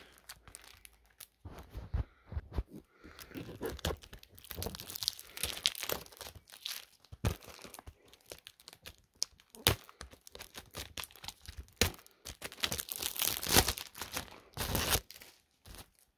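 Packaging on a Blu-ray case being torn and crinkled by hand, in irregular crackling bursts with a few sharp knocks.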